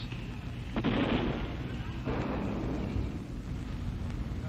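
Gunfire and explosions from street fighting, recorded on an old film soundtrack: a sudden blast about a second in that dies away, a weaker one about two seconds in, over a steady low hum.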